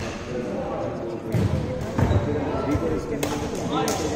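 A few sharp, echoing knocks of badminton rackets hitting the shuttlecock as a doubles rally gets going, over the chatter of voices in a large sports hall.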